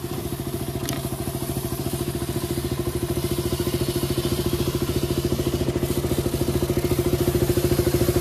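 KTM Duke 200's single-cylinder engine running in gear, spinning the rear wheel on a stand as the drive chain runs through a cleaning brush. A steady, rapid pulse that grows gradually louder, with one sharp click about a second in.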